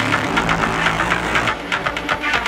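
Electronic music: a sustained low synth bass drone with steady ticking percussion over it. About a second and a half in, the bass and the high hiss drop out, leaving the clicking beat.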